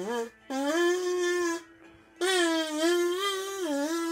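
A single voice singing a slow melody in long held notes, with short breaks between phrases: end-screen music.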